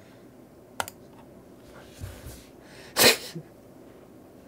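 A man's short, sharp, breathy burst of laughter about three seconds in, after a single click near the start.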